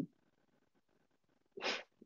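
Near silence, then a short, sharp breathy sound near the end, like a quick intake of breath before speaking.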